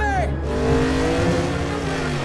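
A truck's air horn sounds in a chord of several tones, its pitch sagging near the end as the truck passes, over the low rumble of highway traffic. A short falling cry is heard at the very start.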